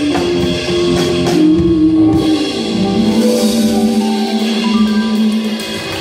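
Live band with drum kit and keyboard playing: about two and a half seconds in the drums fall away and a single low note is held, steady, until just before the end.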